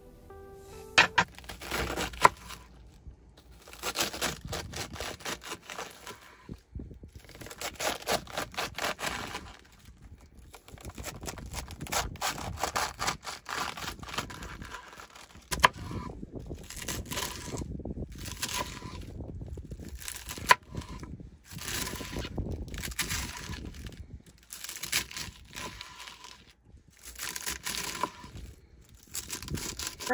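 Lettuce being chopped with a plastic knife on a wooden cutting board: crisp crunching cuts with sharp knocks of the blade on the board, in bursts separated by short pauses. Background music fades out at the very start.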